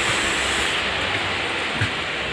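Steady rushing noise inside a railway sleeper coach, even and without a rhythm.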